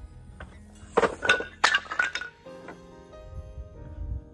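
Several cut poplar wood blocks falling and clattering onto a concrete driveway: a quick run of hard knocks about a second in, lasting roughly a second, over background music.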